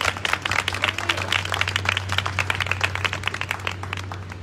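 Audience applauding, many hands clapping, with a steady low hum underneath.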